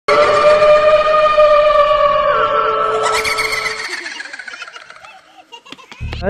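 A long, loud wailing tone held on one pitch, stepping down in pitch about two seconds in, with a brief noisy rush over it near the middle. It then fades away over the last two seconds: an eerie horror-style sound effect.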